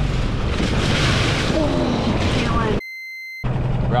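A wave breaking over a small inflatable boat: a loud rush of water and spray, strongest about a second in, over a low rumble of wind on the microphone, with a voice exclaiming through it. Near the end the sound cuts out briefly to a short steady tone.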